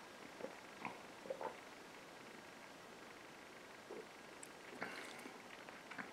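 A man drinking ale from a glass: a few soft swallowing gulps in the first second and a half, then a quiet room with a couple of faint small mouth or glass noises near the end.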